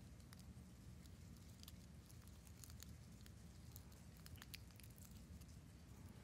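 Near silence, with faint scattered crackles and clicks of many people peeling the sealed film off prefilled communion cups.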